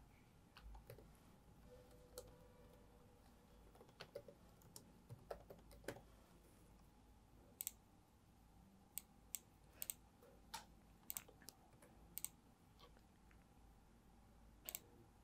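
Faint typing on a laptop keyboard: irregular, scattered key clicks, with a cluster of sharper clicks past the middle.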